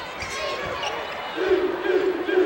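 Basketball arena crowd noise with a ball being dribbled on the hardwood court. About halfway through, the crowd's voices swell into a sustained shout.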